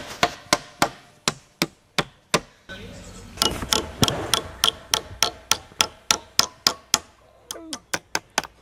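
Hammer blows on wood, struck in a quick, even run. After a short pause about two and a half seconds in, they speed up to about four blows a second, then thin out near the end.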